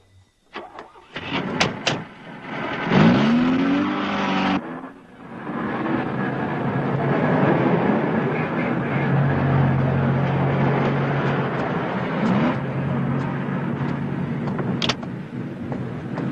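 A few sharp knocks, then a car engine revving up in a rising whine about three seconds in and running loud and steady as the car accelerates away.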